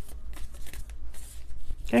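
A tarot deck being shuffled by hand: a quick, irregular run of papery card flicks, with a spoken word starting just at the end.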